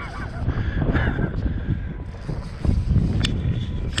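Wind buffeting the microphone as an uneven low rumble, with a sharp click about three seconds in.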